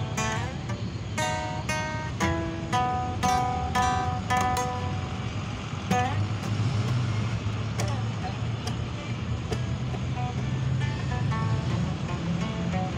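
Acoustic guitar notes picked one after another over the first five seconds or so, then the playing thins out to scattered notes near the end. A steady low rumble of street traffic runs underneath, plainest in the gap.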